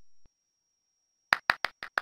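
Near silence, then a quick run of five short, sharp taps about six a second, starting a little past halfway. A faint steady high whine sits underneath.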